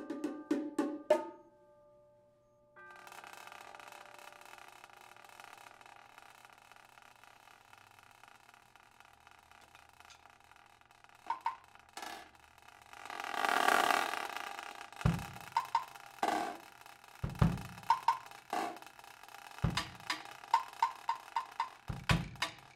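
Live percussion duet on drums and cymbals. A few sharp strokes, then a brief lull, then a long sustained ringing that swells a little past halfway. After that come stick strokes on the drums, punctuated by deep drum hits about every two seconds.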